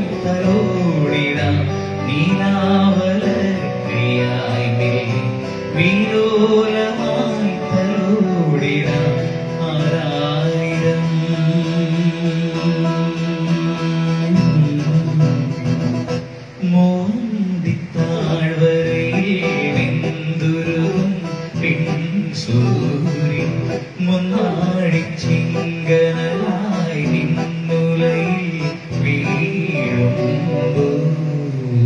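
A man sings a melodic, ornamented song into a handheld microphone, accompanied by an electronic keyboard, with a short break in the voice about halfway through.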